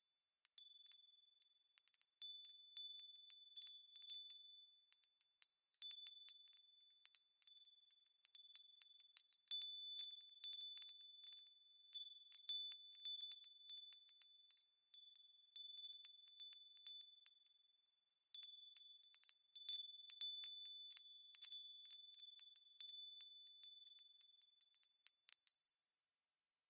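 Faint, high-pitched chimes tinkling with many light, overlapping strikes, with a brief lull about two-thirds of the way through.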